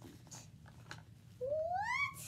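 A child's voice making a high call that glides upward in pitch, starting about a second and a half in.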